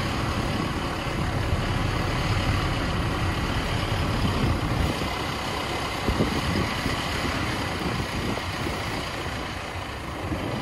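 A 4WD driving along a sandy track, heard from close beside the front wheel: a steady rush of tyre and engine noise with a heavy low rumble and a few brief thumps over bumps, the all-terrain tyres aired down to 18 psi for the sand.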